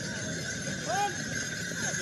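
Outdoor crowd voices with a troupe of tbourida horses milling in line, hooves shuffling. A short high call rises and falls about a second in, and a fainter one follows near the end.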